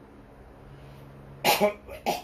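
A man coughs twice in quick succession about one and a half seconds in, after a stretch of quiet room tone with a low steady hum.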